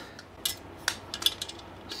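Small metal clinks and clicks of a screw, washer and hand tool being worked at an e-bike's front fork: about five short, sharp ticks, the loudest a little under a second in.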